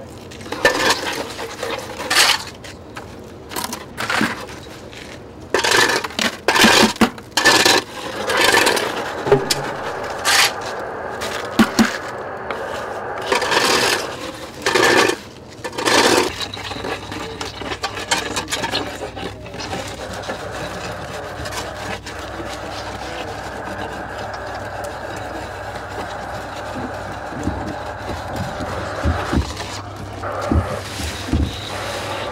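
Hand trowel scraping and smoothing wet concrete along the top of a wooden form: a dozen or so short, separate scraping strokes in the first half. After that the sound settles into a steadier background noise. The strokes are the finishing of a freshly poured concrete patch in a storm-damaged barrier wall.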